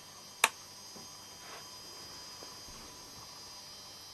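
A single sharp click of a switch being flipped on the homemade voice box, about half a second in, followed by a faint steady electrical hum with a thin high whine.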